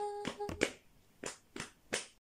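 A hummed note held steady and ending about half a second in, over a sharp clicking beat about three clicks a second that thins to a few last clicks after the humming stops.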